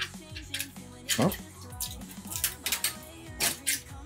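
Background music with a steady beat, over sharp clicks and cracks of a red PLA 3D-printed torture toaster being twisted and pulled apart by hand, its print-in-place levers held fast by the brim. A short "oh" about a second in.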